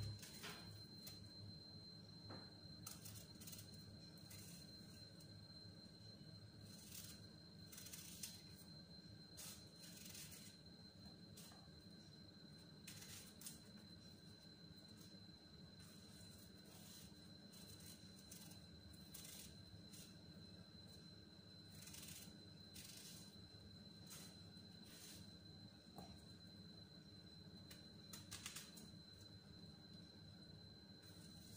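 Faint, intermittent scraping of a small knife paring the skin off an apple, a short stroke every second or two, over a low steady room hum.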